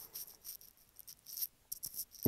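A pause in speech with a few faint, light clicks and rattles scattered through it.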